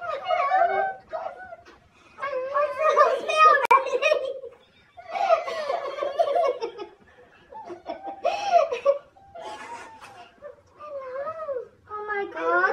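A woman and girls laughing and exclaiming in high voices, in several excited outbursts a second or two long.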